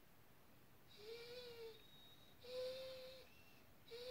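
German Shepherd whining softly through her nose: two drawn-out whines at a steady pitch, with a third beginning at the end. The owner takes the whining as crying for pizza she has been teased with.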